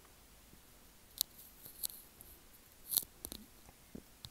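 A few faint, separate taps and clicks of a stylus on a tablet's glass screen, the clearest about a second in and about three seconds in, over quiet room tone.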